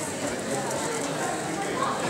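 Indistinct murmur of voices in a hall, steady and with no single clear word or loud event.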